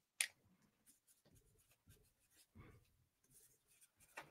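Near silence, with one short sharp click just after the start and a couple of faint soft sounds later.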